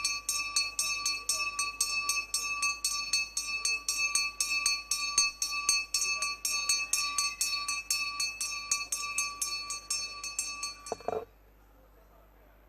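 A temple hand bell rung steadily at about four strokes a second, its clear ringing tone sustained between strokes. The ringing stops abruptly near the end.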